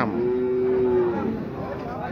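A cow mooing: one drawn-out moo held at a steady pitch for about a second.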